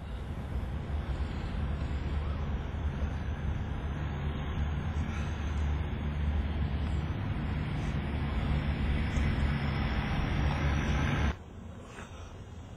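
Steady low engine rumble of a running vehicle, building slightly, then cutting off suddenly near the end.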